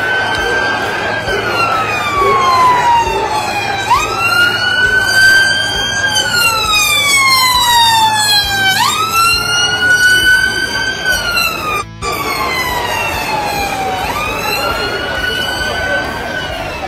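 Police vehicle siren wailing: each cycle jumps up quickly and then falls slowly in pitch, repeating about every five seconds. The sound cuts out briefly about twelve seconds in.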